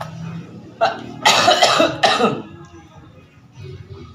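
A short cough just before a second in, then a run of louder coughs lasting about a second, over faint background music.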